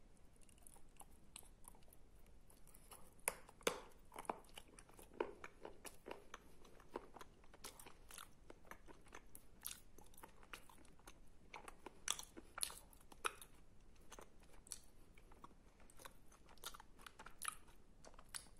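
Close-miked chewing of a mouthful of wet clay paste mixed with sandy clay, with many sharp crunchy clicks and wet mouth sounds; the loudest crunches come a few seconds in and again about twelve seconds in.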